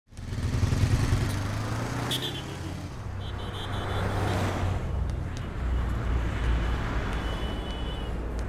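Motorcycle and car engines running at a busy petrol station, with road traffic noise; a vehicle swells past about four seconds in.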